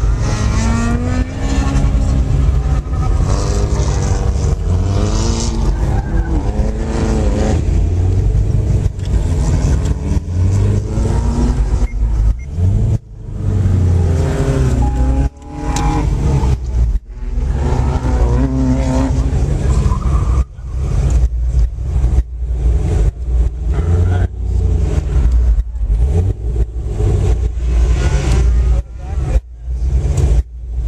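Car engine heard from inside the cabin, revving up and down hard as the car is driven through an autocross course. The engine note rises and falls repeatedly, with many short dips in the sound in the second half.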